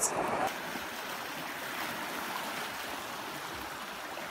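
Small sea waves washing over shoreline rocks, a steady hiss of moving water.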